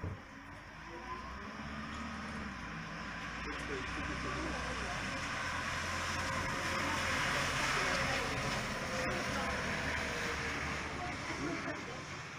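Small red tour bus driving past on wet pavement: engine running low under a hiss of tyres on the wet surface. The sound grows louder to a peak about two-thirds of the way through, then eases off.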